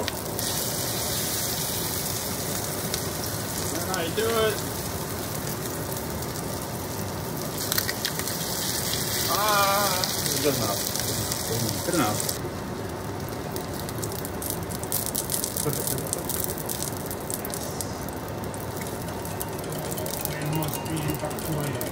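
Battered tofu slabs frying in hot oil in a stainless steel pan, sizzling steadily, with a few sharp clicks as a spatula works against the pan. The sizzle grows quieter about twelve seconds in.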